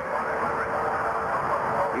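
Race cars running on the track: a steady noise with one held engine tone through most of it, heard through an old TV broadcast's sound.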